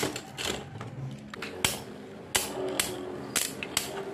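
Beyblade spinning tops clacking against each other and the plastic stadium: a series of sharp plastic clicks about every half second over a faint steady hum of the spinning tops.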